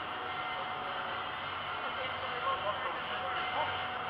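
Large indoor exhibition hall ambience: a steady din of crowd noise with faint distant voices.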